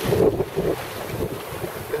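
Wind blowing across the microphone over the wash of choppy sea water around a small sailing boat under way.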